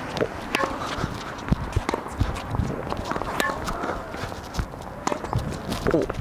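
Tennis rally on an outdoor hard court: sharp pops of racket strikes and ball bounces at irregular intervals, with running footsteps and short squeaks of tennis shoes on the court.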